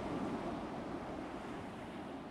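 Steady rushing noise like wind or surf, slowly fading out.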